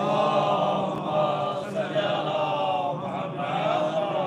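A congregation chanting a salawat together in unison, many voices at once, as the traditional response of blessing when the Prophet Muhammad's name is spoken.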